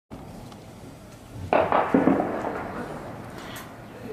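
Two loud bangs of weapon fire about half a second apart, each trailing off slowly, over a steady low background.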